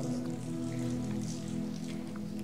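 Soft background music: a sustained chord held steady under a faint hiss.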